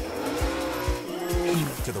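A racing engine revving, its pitch rising and falling, over music with a heavy beat.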